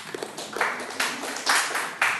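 Audience applauding: a burst of many hands clapping that swells about half a second in.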